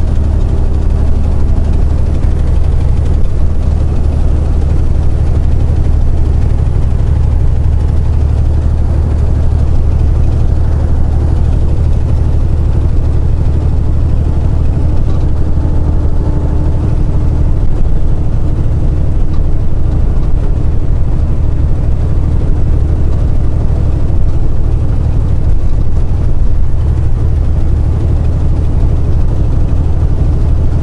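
Semi truck's diesel engine and road noise heard from inside the cab at highway speed, pulling a loaded trailer: a loud, steady low drone.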